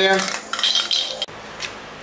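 An emptied aerosol spray can of primer being put down, a short metallic clatter with a high ringing note that cuts off suddenly just over a second in.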